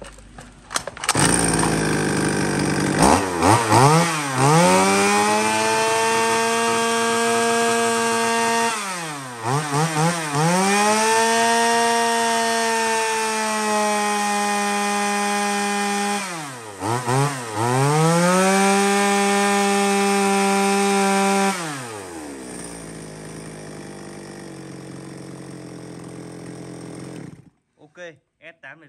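Shindaiwa 380 two-stroke chainsaw revved off the cut three times, each time rising to a steady high-revving note held for several seconds, running clean and stable. It drops back to idle and then shuts off near the end.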